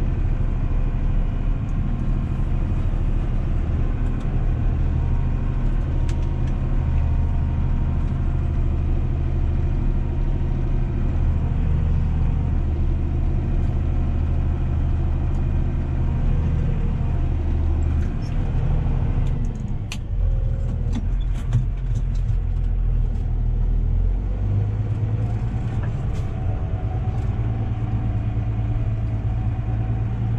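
Valtra tractor's diesel engine running steadily under load, heard from inside the cab, as the tractor drives back and forth compacting a silage pile. About two-thirds of the way through, the engine note dips briefly with a few clicks, then settles at a higher, steadier pitch.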